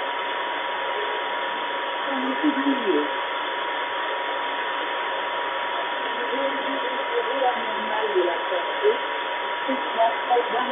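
Shortwave radio reception on 2749 kHz through a portable DSP SDR receiver with a passive loop antenna: steady static hiss with a steady high whistle tone. Under it, a weak voice reads the Coast Guard marine weather forecast in French, heard faintly about two seconds in and again from about six seconds in to near the end.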